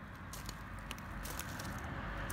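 Footsteps crunching on gravel, a soft steady crunching with a few sharper crackles, growing slightly louder.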